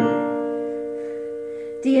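Two notes struck together on an electronic keyboard and held, sounding as one clear chord that slowly fades: an ear-training interval, which is then named as D and B flat. A voice starts naming it near the end.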